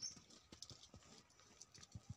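Faint, scattered rustles and small snaps of leaves and twigs as a bush is picked over by hand, with a sharper click right at the start.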